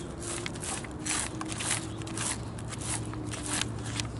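The back of a butter knife scraping scales off a Chinook salmon's side, a series of short scraping strokes at about two a second.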